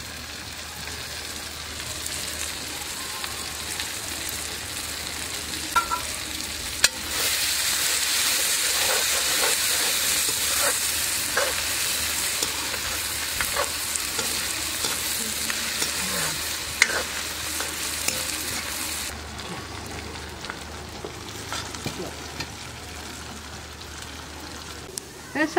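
Chopped onions and tomatoes sizzling in oil in a metal karahi over a wood fire, with a spatula clicking and scraping against the pan as it stirs. After a sharp knock about seven seconds in, the sizzle grows much louder, then eases off again a few seconds before the end.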